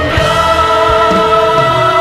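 Korean contemporary worship song recording: a choir holding long sustained notes over band accompaniment with bass and drum beats.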